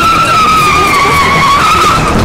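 Car tyres screeching under braking: one long, loud squeal that dips slightly in pitch and rises again near the end, over the noise of the moving car.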